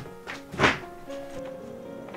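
Background music of steady held notes, with one loud thunk about two-thirds of a second in.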